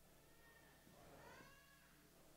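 Near silence, with two faint, short, high-pitched arching cries, one near the start and one about a second in.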